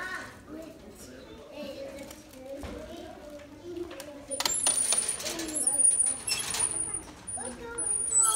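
A small rodent running in a wire-mesh exercise wheel, which rattles and jingles with high metallic squeaks, starting about four and a half seconds in.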